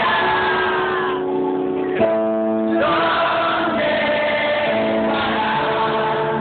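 Live pop song: a male singer with keyboard accompaniment, sustained notes and sung phrases over a steady level. It is recorded from the audience on a phone, so it sounds dull, with the treble cut off.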